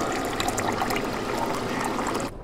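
Coffee pouring from a glass pot into a cup, a steady liquid stream.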